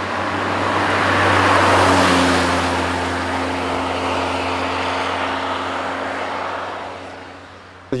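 Toyota MR2 (AW11) with a supercharged 1.6-litre four-cylinder engine, driving past at a steady engine speed. The sound grows louder over the first two seconds or so as the car approaches, then fades slowly as it drives away, dying out near the end.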